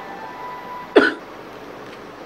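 A brief mouth or throat noise from the narrator about a second in, short and sharp with a quick drop in pitch, over a steady background hiss.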